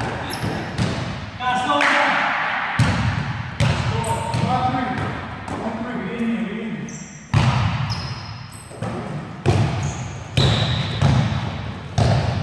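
A basketball dribbled on an indoor gym court in irregular bounces, each echoing in the large hall.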